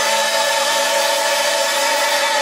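Male and female singers with a backing chorus and accompaniment hold one long, steady chord: the final sustained note of a musical-theatre song.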